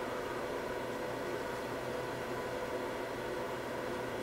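Steady, even hiss with a faint hum underneath: background room tone with no distinct event.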